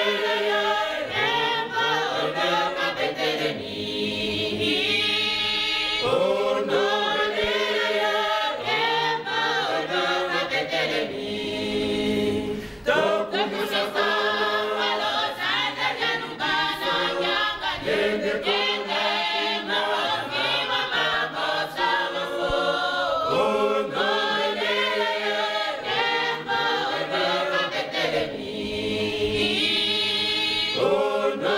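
A women's church choir singing together in long phrases.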